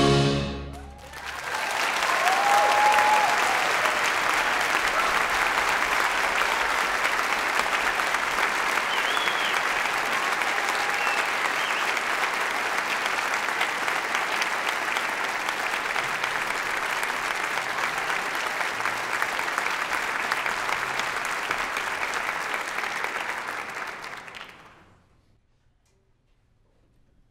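An orchestra and a tenor's final held note cut off right at the start, then the audience applauds steadily with a few cheers, the applause dying away about 24 seconds in.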